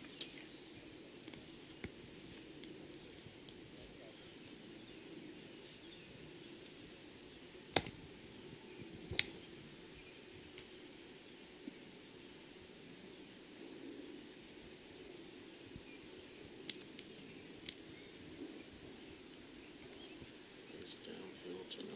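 Quiet outdoor ambience on a golf course: a faint steady high insect drone from the trees, with a few sharp clicks, the loudest two about eight and nine seconds in.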